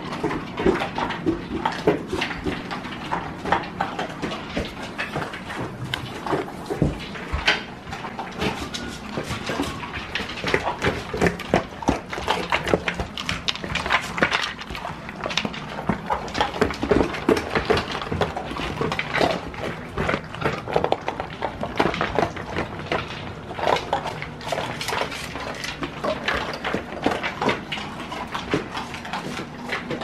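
Several dogs eating from steel and plastic slow-feeder bowls: a steady, irregular clatter of kibble rattling and bowls knocking, mixed with chewing and lapping.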